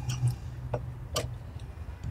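A few light metallic ticks of a wrench working the small bolts on an aluminium catch-can clamp bracket, the clearest two about half a second apart near the middle.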